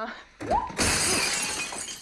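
A person crashing down onto a glass-topped coffee table: a thud and a short cry, then a loud shattering of the glass top with pieces clattering down, fading over about a second.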